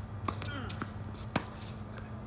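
Tennis ball impacts during a rally, racket strikes and bounces on the hard court: two sharp pops about a second apart, the second louder.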